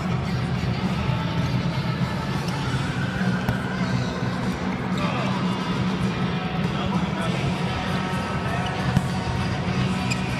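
A volleyball being kicked back and forth and bouncing on the hard court floor, a few sharp thuds. Music and voices are heard in the background.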